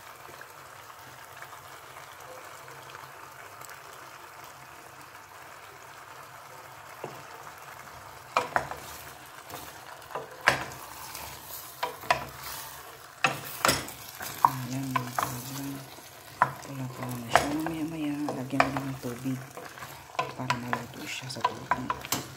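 Pork and taro chunks sizzling in a stainless steel pot, a steady hiss. From about eight seconds in, a wooden spoon stirs the pieces, with repeated sharp knocks and scrapes against the pot.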